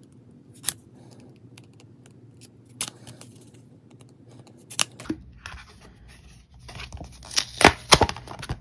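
A craft knife and hands working the taped corners off a paper card: a few sharp clicks about two seconds apart, then a rush of tearing tape and rustling paper with loud snaps near the end.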